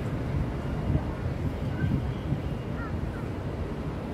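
Steady rumble of heavy road traffic on a bridge, with wind buffeting the microphone and a few faint short chirps.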